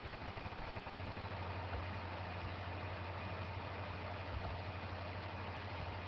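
A steady low hum over a faint even hiss, the hum setting in about a second in and holding level.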